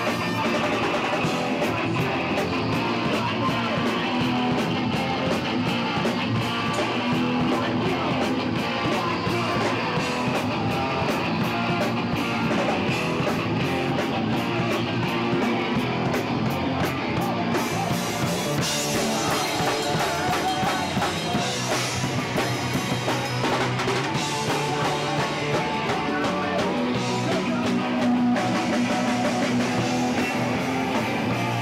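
Live rock band playing, with electric guitar and a drum kit, loud and continuous. The sound gets brighter in the high end a little past halfway.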